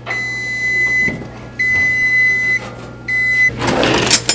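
Digital toaster oven's timer beeping three long beeps, the last cut short, signalling that the cooking is done. Near the end a clattering rattle of metal utensils as a kitchen drawer is pulled open.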